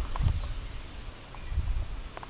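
Outdoor background noise with a low rumble on the microphone that swells twice, about a quarter second in and again near the end.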